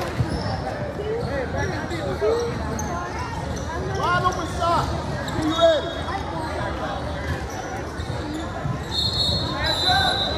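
Indoor basketball game sounds on a hardwood gym floor: many short sneaker squeaks scattered throughout, a ball bouncing, and voices of players and onlookers echoing in the large hall.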